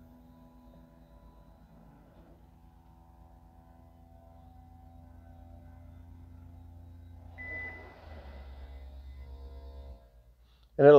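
Power soft top of a Chevrolet Camaro convertible retracting: a faint, steady motor hum with a whine over it as the top folds back. About seven seconds in there is a short high squeak and a rustle, and then the hum shifts to a lower, slightly louder note.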